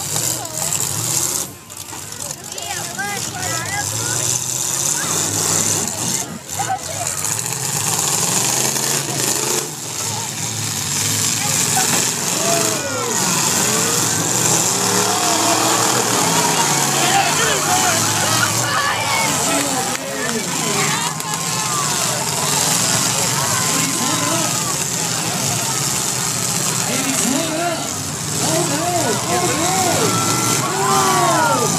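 Demolition derby cars' engines revving in the arena, under a grandstand crowd shouting and cheering with many voices at once.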